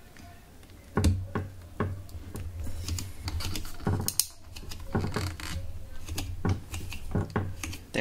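Plastic steering-wheel trim being handled and pressed into place on a Mugen steering wheel: a run of irregular sharp plastic clicks and taps as the pieces are pushed and lined up.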